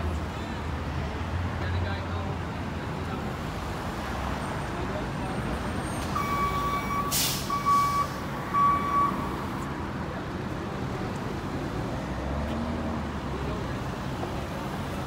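Steady street-traffic rumble at a busy city intersection. About halfway through, a heavy vehicle lets out a short hiss of air brakes, alongside three electronic beeps.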